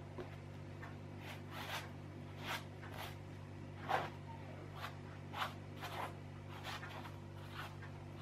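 Paintbrush loaded with thick paint stroking across a canvas: about ten short brushing scrapes at irregular intervals, the loudest about four seconds in. A steady low hum runs underneath.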